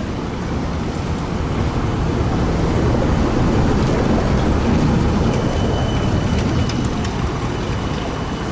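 Hess Swisstrolley 5 articulated trolleybus passing close by on cobblestones: tyre noise swells to a peak midway and eases off as it pulls away, with a thin high whine in the second half.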